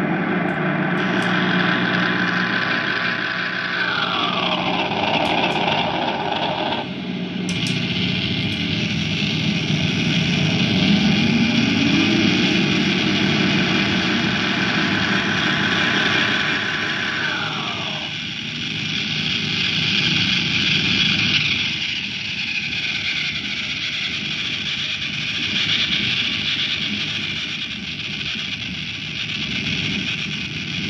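Electric guitar feedback from a Squier Bullet Stratocaster leaning against its amp, run through distortion and effects pedals: a dense, noisy wash that slides down and up in pitch as the pedals are adjusted. It cuts out abruptly about seven seconds in and comes straight back.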